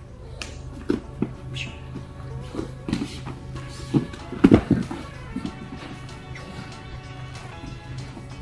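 Background music, with a few soft knocks and one heavy thud about four and a half seconds in: a body dropped onto foam grappling mats in a double-leg takedown.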